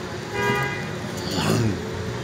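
A vehicle horn honks once, a steady honk about half a second long starting a third of a second in, over city street traffic. A short voice with sliding pitch follows near the middle.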